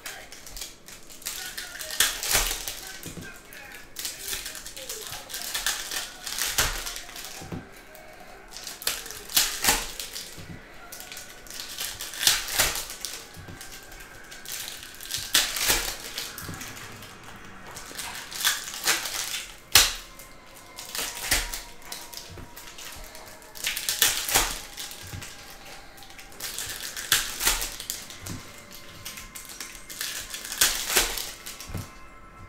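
Trading cards being handled by hand as packs are opened and sorted: a run of sharp clicks and snaps every second or two as cards are flicked through and set down on stacks.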